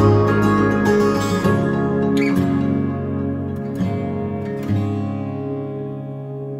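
Acoustic guitar playing the closing bars of a song without singing: a few strummed chords, the last struck near the end and left ringing as it fades away.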